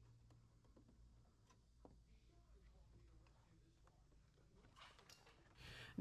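Near silence: room tone with a low hum and a few faint taps and clicks as hands handle the aluminium mesh grill guard.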